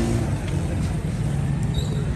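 A steady low rumble of outdoor background noise, with the end of a man's spoken phrase in the first moment.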